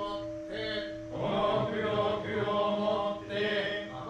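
Buddhist sutra chanting by a male voice in slow phrases, with a steady held tone sounding beneath it.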